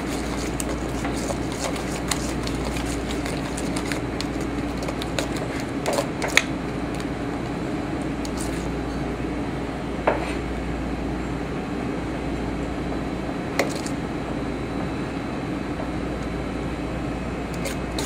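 A metal spoon clinks against a stainless steel mixing bowl a handful of times as a thick creamy filling is stirred and spooned out, over a steady hum of kitchen ventilation.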